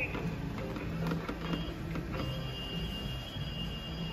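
An animated Halloween skeleton decoration playing its music quietly, with a steady mechanical whirr underneath.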